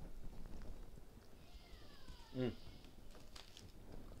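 A man chewing a mouthful of cheesesteak, then an appreciative "mmm" hum about halfway through, the loudest sound. Just before the hum comes a short falling whine-like tone.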